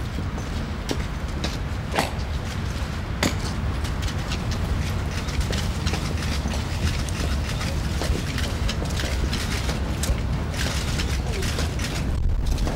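Outdoor ambience: a steady low rumble with scattered sharp clicks and ticks, two of them standing out about two and three seconds in.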